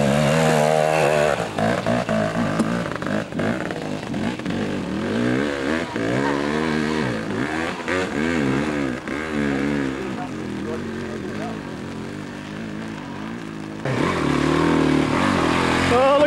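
Enduro dirt bike engines working up a muddy hill climb, the revs rising and falling again and again as the throttle is worked and the rear wheel searches for grip in the rut. About two seconds from the end a bike comes close and the engine gets louder.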